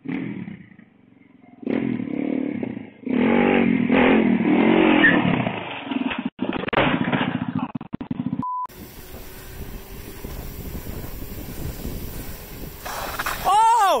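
Small dirt bike engine revving up and down unevenly, loudest in the middle, then cutting off about two-thirds of the way through. A steady hiss follows, and near the end a person shouts "ohhh".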